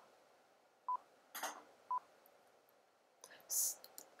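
Software recording countdown: three short, identical electronic beeps about a second apart, counting down to the start of audio recording.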